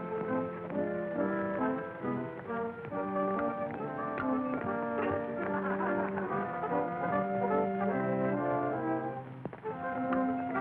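Instrumental dance music led by brass, with trombone prominent, playing steadily with held notes.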